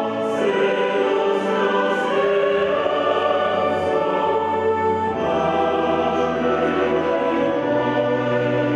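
Mixed choir of men and women singing sacred music in full voice with an orchestra of strings and woodwinds, sustained chords that change a second in, about halfway, and near the end.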